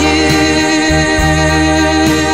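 A recorded song playing: a singer holds one long, steady note over a bass line and backing instruments.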